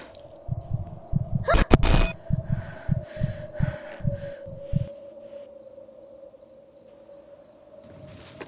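Horror-film soundtrack: rapid low thumps, about three or four a second, over a steady sustained drone tone, with a loud sharp hit about a second and a half in. The thumps stop about five seconds in, leaving the drone alone with faint, evenly spaced high ticks.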